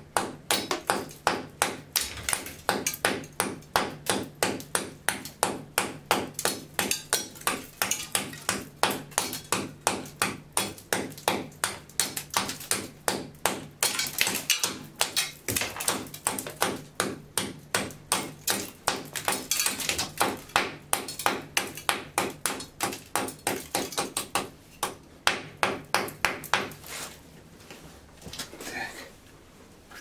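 Quick repeated metallic tapping, like hammer blows on the metal bracket that holds the wash basin, about three strikes a second and stopping about 27 seconds in. The bracket is being knocked into shape because the basin would not seat on it.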